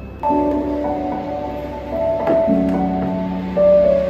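Instrumental music playing through a Hikvision DS-QAE0420G1-V 20 W analog column speaker, driven by a Hikvision DS-QAE0A60G1-VB 60 W analog amplifier and fed over Bluetooth. It starts suddenly about a quarter of a second in, with sustained notes in chords that change every second or so.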